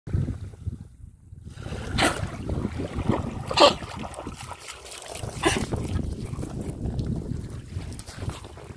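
A dog wading and splashing through shallow sea water, with three louder splashes about two, three and a half and five and a half seconds in, over steady wind noise on the microphone.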